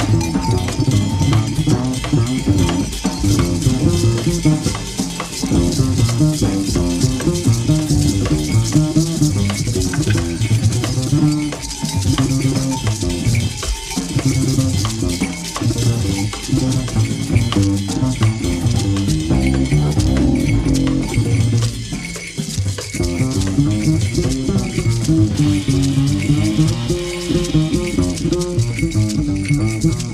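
Modal jazz from a piano, bass and drums quartet, with a shaken rattle running through it over dense drumming.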